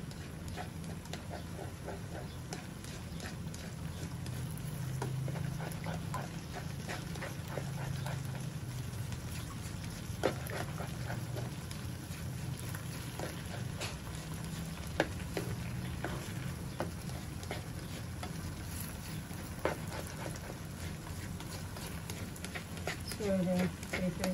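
A nylon slotted spatula scraping and tapping against a non-stick wok as egg is stirred and scrambled, with scattered light clicks and a few sharper knocks about ten, fifteen and twenty seconds in. A steady low hum runs underneath.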